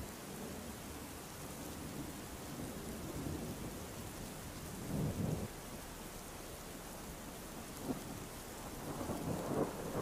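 Steady rain falling on foliage, with low rumbles of distant thunder, the strongest about five seconds in and another building near the end.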